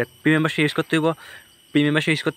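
A man speaking in short phrases over a steady high-pitched insect drone.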